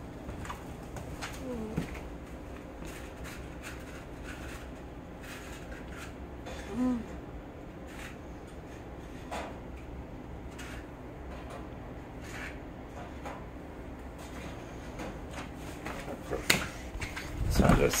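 Quiet kitchen room tone with a steady low hum and faint scattered clicks and taps. There are two brief faint voice-like sounds, and a sharper knock comes shortly before the end.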